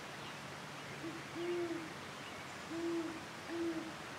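Great horned owl hooting in its rhythmic territorial pattern: a short low hoot and a longer one, a pause, then two more drawn-out hoots.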